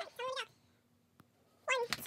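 Short, high-pitched vocal squeaks: two in quick succession, then a pause broken by a single faint click, and the squeaks start again near the end at about four a second, with low thumps under them.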